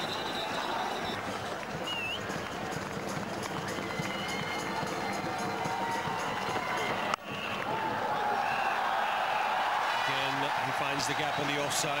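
Steady noise of a large stadium crowd at a cricket match, a little louder and fuller after a sudden break about seven seconds in, as the ball is played.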